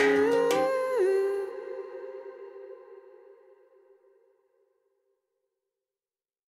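The closing notes of a Malayalam song: a held chord with a short downward bend about a second in, fading out over about four seconds to silence.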